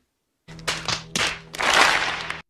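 A crowd slapping their hands against their foreheads at once: a patchy burst of slaps like scattered clapping, starting about half a second in, with a low steady tone beneath it.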